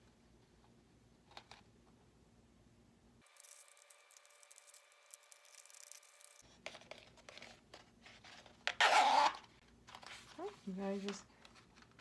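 Handling noise from an EVA foam bracer with a glued-in zipper: faint rubbing and small clicks, with one short, louder rasp about three-quarters of the way through.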